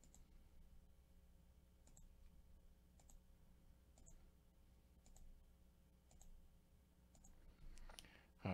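Faint computer mouse clicks, about one a second, over near-silent room tone.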